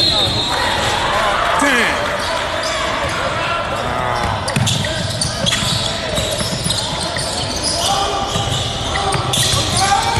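Basketball being dribbled and bounced on the court amid the voices of players and spectators during a game.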